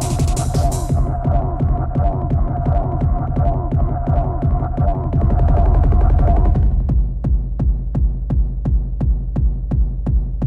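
Fast tekno music from a live set: an evenly repeating kick drum, close to three beats a second, over heavy bass. The hi-hats drop out about a second in, and a held synth tone cuts out about two-thirds of the way through, leaving only kick and bass.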